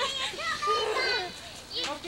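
Children's voices shouting and calling out as they play, high-pitched and excited.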